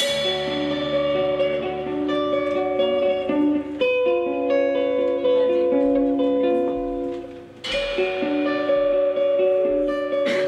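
Live band comes in together on a sudden full-band entry and plays a song, with electric guitar and held melodic notes over bass and drums. The music drops out briefly about seven and a half seconds in, then the band comes back in.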